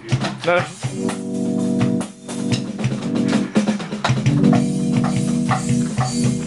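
Electric guitar playing sustained, ringing chords, starting about a second in, with a short break near the middle.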